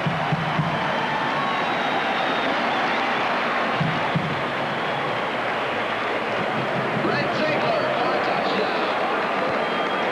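Large stadium crowd cheering a touchdown: a loud, steady roar of many voices, echoing under a dome roof.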